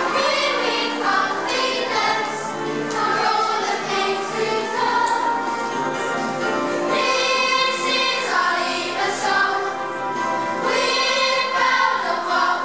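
A choir of children singing a song together over musical accompaniment.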